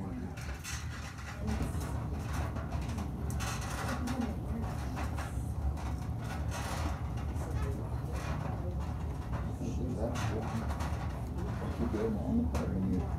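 Two men straining against each other in an arm-wrestling hold: low grunts and breaths now and then, with scattered rustles and clicks, over a steady low hum.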